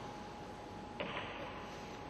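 A sharp knock about halfway through, followed quickly by a smaller second one, over steady hall background noise with a faint constant tone.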